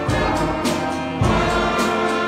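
Elementary school concert band playing: sustained wind and brass chords over a steady drum beat.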